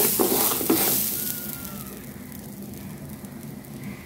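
Washed rice frying in ghee in a metal pot, turned with a wooden spoon: grains scraping and rustling over a sizzle. The stirring stops in the first second or two, leaving a quieter, steady sizzle.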